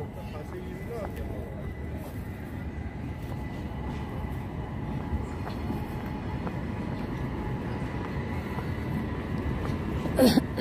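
Street tram running along its tracks: a steady low rumble that slowly grows louder, with a faint steady whine above it.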